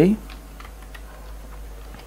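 Computer keyboard being typed on: a few scattered, light key clicks at an irregular pace.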